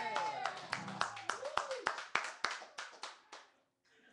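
A few people clapping unevenly, with a man screaming and whooping near the start over the last ring of an acoustic guitar chord; the claps thin out and stop shortly before the end.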